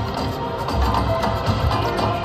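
Rhino Charge video slot machine playing its free-games bonus music, a looping tune with a steady low beat, while the reels spin through the free games.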